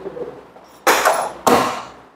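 Two sharp clunks from the body of a Suzuki Burgman Street scooter being handled at its seat, about a second and a second and a half in, each dying away quickly.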